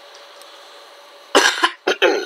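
A person coughing twice in quick succession near the end, two short loud bursts over a faint steady hum.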